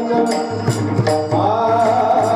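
A man singing a Marathi devotional song (abhang) into a microphone in a held, gliding melody, with percussion keeping a regular beat; a low drum tone comes in about half a second in.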